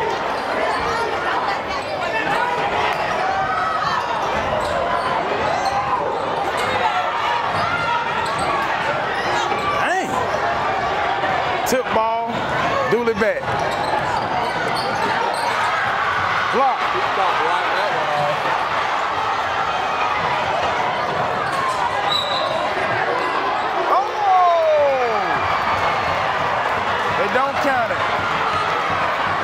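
Basketball being dribbled on a hardwood gym floor during live play, under the steady din of a gym crowd's voices and shouts.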